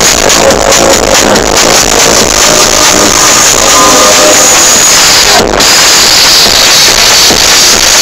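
Very loud progressive trance played over an open-air festival sound system. The kick drum and bass drop out about two seconds in for a breakdown, and after a brief cut at about five and a half seconds a bright hissing sound carries on.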